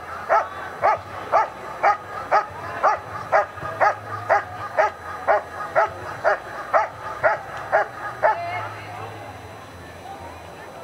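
German Shepherd Dog barking at the protection helper in a steady guarding bark, about two barks a second. The barks stop about eight seconds in.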